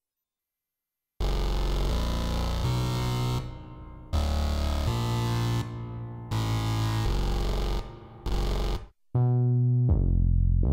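The CS Drafter software synthesizer playing its 'Trashed' preset: harsh, hissy held notes over a heavy bass, in phrases of one to two seconds with short gaps, starting about a second in. Near the end the sound changes to a cleaner, clearly pitched tone as a new preset comes in.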